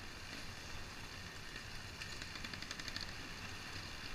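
Steady rumble of tyres and wind as an off-road bike rolls down a loose stony track, picked up by a camera mounted on the bike. A brief rapid rattle comes about halfway through.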